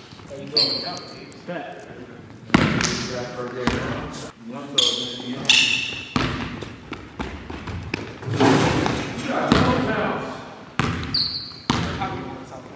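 A basketball bouncing on a hardwood gym floor and sneakers squeaking in short high squeals several times, with shouts and voices in between, in a large gym hall.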